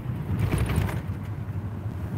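Steady low hum of a vehicle engine heard from inside the car's cab.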